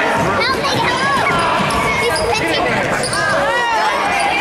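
Basketball shoes squeaking on a hardwood gym floor as players scramble, in many short high squeals, over voices of players and spectators in the gym.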